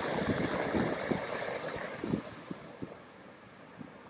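Wind buffeting the microphone over the wash of ocean surf, loudest at first and easing off about three seconds in.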